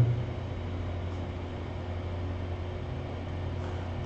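Steady low background hum with faint hiss, unchanging throughout; no distinct event.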